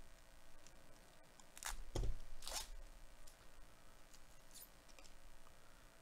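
A Bowman Chrome Sapphire Edition trading-card pack being torn open: two short rips of the wrapper, a little under a second apart, about two seconds in, with faint crinkling around them.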